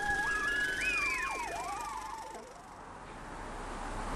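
Swooping, siren-like sliding tones that wander up and down and fade out about two and a half seconds in, closing the intro jingle. Near the end a hiss of wind and outdoor noise rises.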